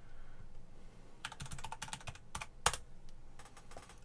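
Computer keyboard keys typed in a quick run of clicks, starting about a second in, with one louder keystroke past the middle: a password being typed in to log in to Windows.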